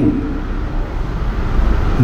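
Steady background noise in a pause between words: a low rumble with hiss over it, with no distinct events.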